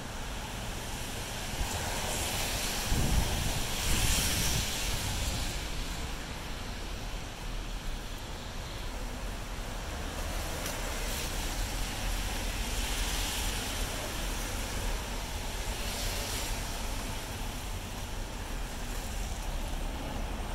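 City traffic on rain-wet streets: car tyres hissing on the wet road, swelling several times as cars pass. Wind buffets the microphone with a low rumble about three to four seconds in.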